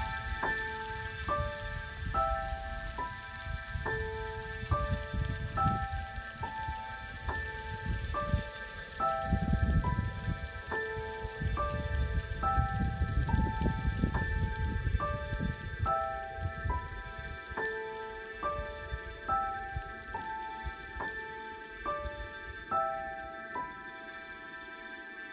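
Background music: short bell-like notes in a repeating pattern over a low crackling rumble that swells in the middle and fades near the end.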